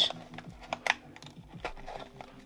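A handful of light clicks and taps from hands turning over and handling a small cardboard Raspberry Pi 4 box.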